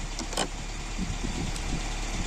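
Snow and frost being scraped and brushed off a car windshield with a plastic ice scraper, over a steady low hum, with one sharp click about half a second in.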